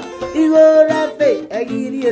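Acoustic guitar strummed while a man sings along, holding one note for most of a second around the middle before sliding down.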